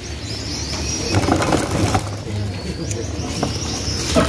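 Many caged domestic canaries chirping and twittering, short high calls scattered through, over a steady low hum.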